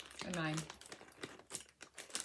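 Crinkly plastic snack bag being handled, with short irregular rustles after a brief spoken word.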